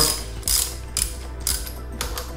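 Socket ratchet wrench clicking in short strokes about every half second as a bolt is loosened.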